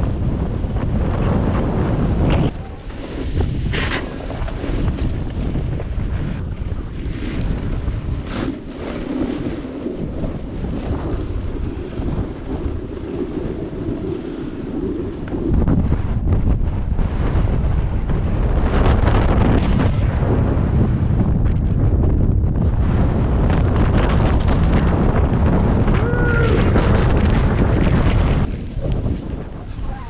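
Wind rushing over the microphone of a camera worn by a snowboarder riding downhill, mixed with the board sliding and scraping over the snow. It gets louder about halfway through, as the ride speeds up, and stays loud until just before the end.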